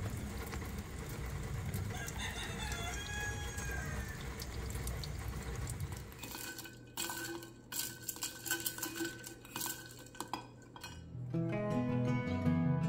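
A rooster crows once, about two seconds in, over a steady low background noise. Then come scattered clinks of a glass bowl and dishes on a stone kitchen counter, and acoustic guitar music starts near the end.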